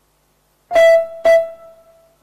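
Electronic keyboard music starting: the same note struck twice, loud, about half a second apart, each left ringing.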